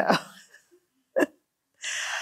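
A woman laughing into a close microphone: one short voiced burst of laughter about a second in, then a breathy laughing exhale near the end.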